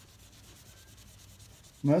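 Faint rubbing of steel wool worked by hand over a rifle's metal nose cap and the stained wood behind it.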